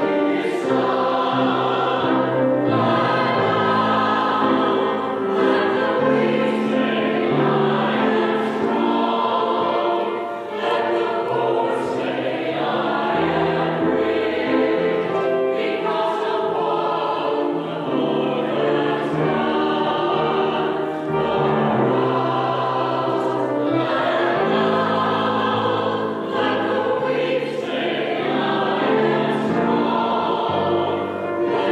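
Church choir, mostly women's voices with at least one man, singing an anthem in harmony, with sustained notes that change every second or so.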